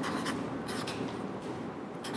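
Felt-tip marker writing on a sheet of paper pressed against a whiteboard: short scratchy strokes as a number is written.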